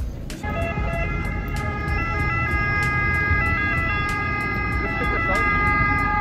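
Emergency vehicle siren sounding loudly, its pitch stepping up and down, over a low street rumble; it starts suddenly about half a second in.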